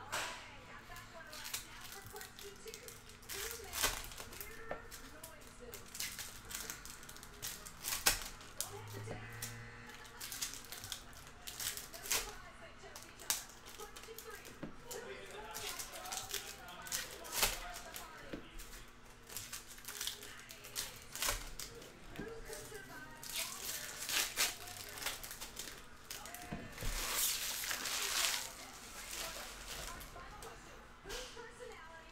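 Foil trading-card packs being torn open and crinkled by hand, with cards handled in between: a run of sharp crinkles and ticks, and a longer tearing crinkle near the end.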